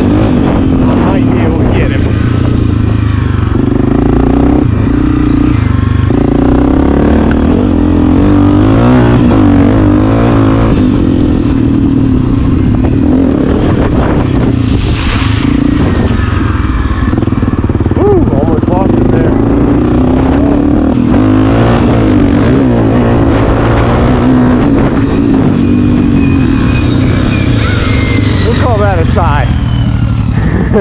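Honda CRF250F air-cooled four-stroke single-cylinder dirt bike engine running hard at close range, its pitch rising and falling as the throttle is worked through the track's turns.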